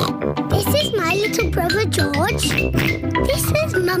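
A child's voice introducing the family, broken by cartoon pig snorts, over a light theme tune for young children.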